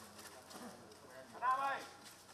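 A short, high-pitched vocal sound from a person, about one and a half seconds in, rising and falling in pitch, over faint background noise.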